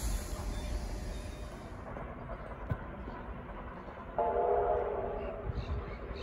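Low rumble of a Sydney Trains Tangara electric train moving at the platform, then, about four seconds in, a train horn sounds once for about a second, several tones at once.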